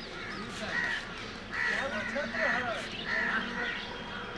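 Crows cawing: three harsh calls come about a second and a half in, close together over the next two seconds, over the voices of people talking.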